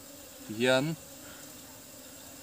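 Honey bees buzzing steadily, with a short spoken word about half a second in.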